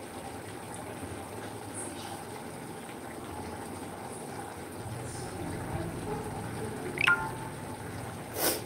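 Curry simmering in an aluminium pot on a gas stove: a steady hiss with liquid bubbling. About seven seconds in there is one brief sharp sound, the loudest moment.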